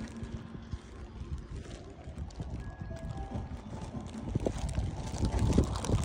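Wind buffeting the microphone, a low, uneven rumble that grows a little louder toward the end.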